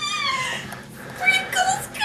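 A person making high-pitched, squeal-like vocal sounds: a falling squeal at the start, then a shorter one about a second and a half in.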